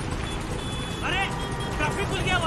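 Congested city street traffic noise, a dense steady rumble of engines, from a TV drama's soundtrack, with a man shouting a line about a second in and again near the end.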